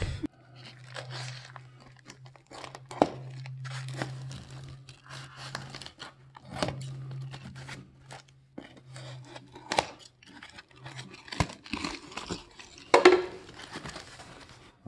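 White foam packaging and its plastic wrapping being pulled, torn and crinkled open by hand, in irregular crackly bursts with sharp little clicks, loudest about a second before the end. A steady low hum runs underneath for most of it.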